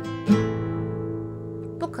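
Acoustic guitar strumming an A minor chord: a last strum of the down-up-up pattern about a third of a second in, then the chord left ringing and fading away.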